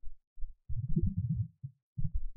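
Muffled low thuds of keys being typed on a computer keyboard, a few early and then a quick run in the middle.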